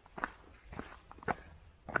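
Footsteps of Red Wing Iron Ranger leather boots walking on a thin layer of snow, about four steps roughly half a second apart.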